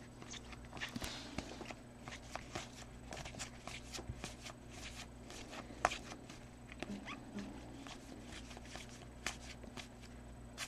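Trading cards being flipped through one at a time in the hands: faint, irregular soft clicks and slides of card against card over a low steady room hum.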